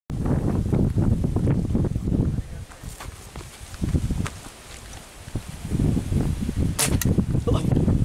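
Tranquilizer dart gun fired at an elephant: a single sharp shot near the end, followed a moment later by a fainter click. Wind rumbles on the microphone before and after the shot.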